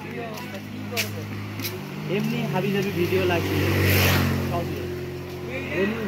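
A motor vehicle passing along the road: a steady engine note with tyre and engine noise that swells to its loudest about four seconds in, then fades.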